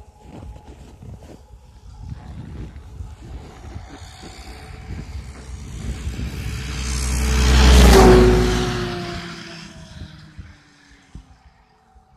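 A snowmobile approaching along the trail, passing close by about eight seconds in and fading away, its engine note dropping in pitch as it goes.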